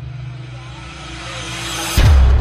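A cinematic riser: a whooshing swell of noise that grows steadily louder and brighter over a low sustained music drone, cutting into a sudden heavy low boom right at the end.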